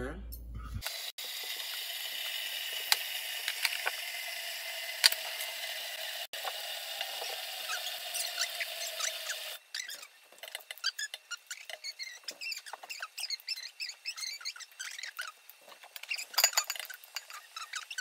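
Water running from a kitchen faucet into the enamel canner pot as a steady hiss for about nine seconds, then stopping. After that come scattered light clicks and handling sounds.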